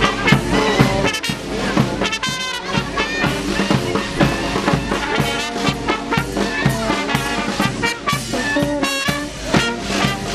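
Street brass band, saxophone among the instruments, playing a tune with a steady beat as it marches.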